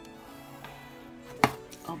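A single sharp plastic knock about one and a half seconds in, with a smaller one just before the end, from the red plastic lid of a watercolour paint palette being moved on the drawing board. Soft background music with sustained tones plays throughout.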